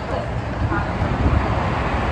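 Low, uneven rumble beside a BART train standing at a station platform, with wind buffeting the microphone.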